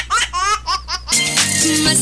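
A quick run of high-pitched 'ha-ha-ha' laughs, a recorded laugh effect on the show's logo sting. Music with a steady bass comes in just over a second in.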